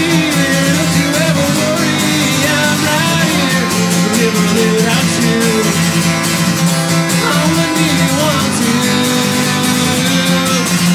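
Acoustic guitar strummed steadily, with a man's voice singing over it.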